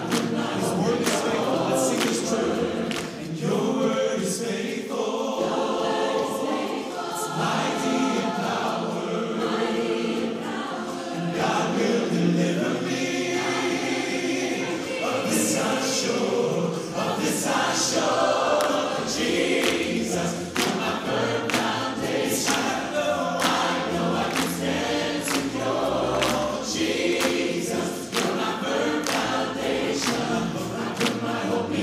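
A mixed vocal ensemble of men and women singing together in harmony, amplified through handheld microphones.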